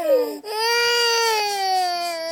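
Young child crying: a short cry at the start, then one long wail that slowly falls in pitch.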